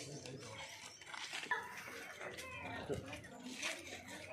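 Background voices of people in an outdoor lane, with a short falling cry, like an animal's or a child's, about three seconds in.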